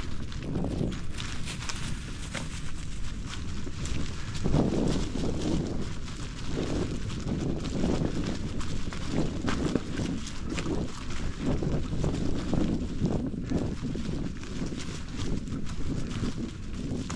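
Bicycle tyres rolling over dry fallen leaves on a dirt trail, a continuous fine crackle, with wind buffeting the microphone in low, uneven surges.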